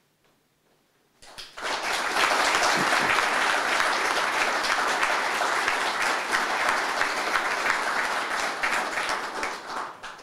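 Audience applauding, a dense clapping that begins about a second and a half in and tails off near the end.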